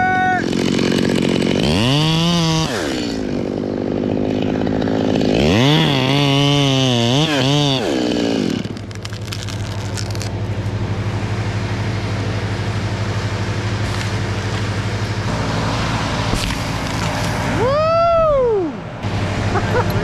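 Chainsaw idling, revved up and back down twice in the first half, a short burst then a longer one of a few seconds, after which it idles steadily.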